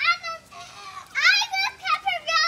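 A young child's high-pitched voice calling out in several short, loud bursts.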